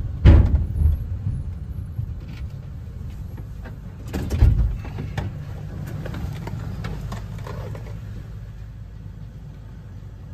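A 20-foot box truck's engine running low and steady as the truck rolls slowly, heard from inside the cab. Two dull knocks sound, one right at the start and one about four and a half seconds in.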